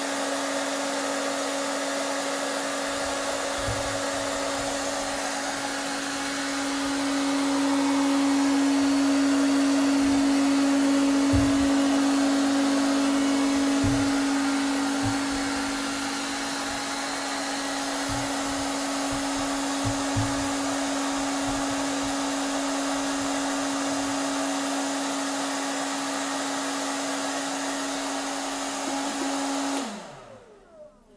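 Cleanmaxx shirt ironer's hot-air blower running steadily with a strong hum, inflating a shirt on the dummy to smooth it. It grows louder for several seconds in the middle, with a few soft low thumps, and cuts off at the very end.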